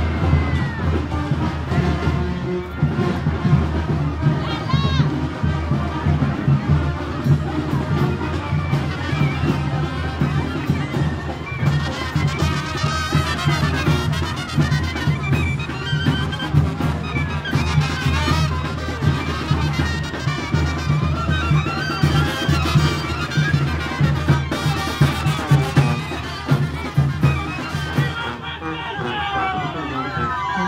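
Marching brass band playing, a sousaphone and a bass drum keeping a steady beat under the horns, with crowd voices around it.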